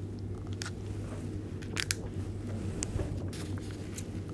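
Scattered soft clicks and crackles from handling a thin plastic cup and book pages, over a steady low hum.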